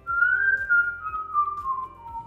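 A man whistling a tune: a long note that rises a little, then slides down in steps to a lower note and holds it.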